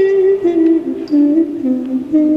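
A solo trumpet melody from a restored 1984 live tape plays a slow line of single held notes that steps downward and then rises again.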